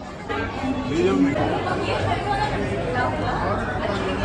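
Several people chattering at once, overlapping voices with no single clear speaker, getting louder about a third of a second in.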